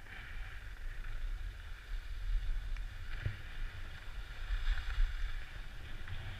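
Skis hissing and scraping over packed snow, the hiss swelling and fading every second or two, over a low rumble of wind buffeting the action camera's microphone. A single sharp knock sounds a little past halfway.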